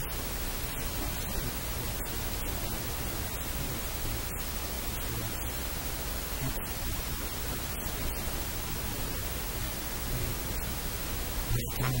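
Steady hiss of static-like noise, spread evenly from low to high pitch, with no distinct sound standing out from it.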